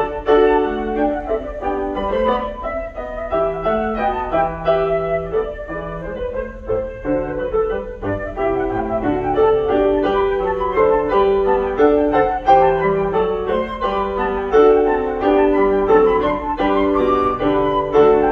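Concert flute and Kawai grand piano playing a classical piece together, the flute's melody over the piano, in one continuous passage without pauses.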